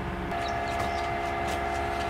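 A horn sounding one long, steady chord of several notes for about two seconds.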